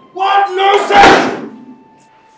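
A metal gate being handled and banging, with the loudest hit about a second in.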